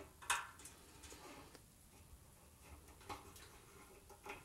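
Faint handling sounds of fingers looping valve string around a French horn rotary valve's stop-arm screw, with a sharp little click about a third of a second in and a softer one about three seconds in.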